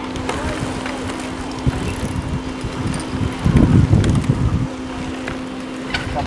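Wind buffeting the microphone outdoors, with a stronger gust of low rumble a little past the middle. A steady low hum runs underneath.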